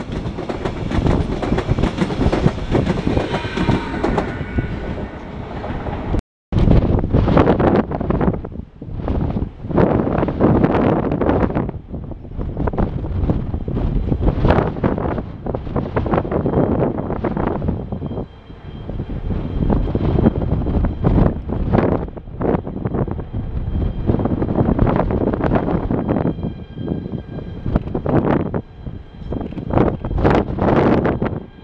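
A Trenitalia ETR170 electric multiple unit rolling past with its wheels clattering on the rails. After a brief cut, two E405 electric locomotives are starting a container freight train away from the station, a rumble that swells and fades every second or two. In the last third a steady high electric whine from the locomotives joins in.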